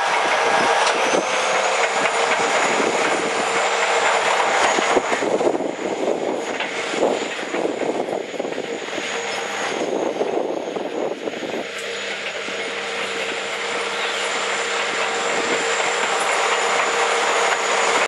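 Caterpillar crawler bulldozer working: its diesel engine runs under load and the steel tracks clatter as the blade pushes soil to cut a V-ditch. A thin, steady high whine runs through the engine noise, and the sound gets rougher and more uneven in the middle as the blade digs in.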